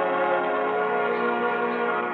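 An orchestral music bridge holds a long sustained chord, and some of its lower notes shift about a second in.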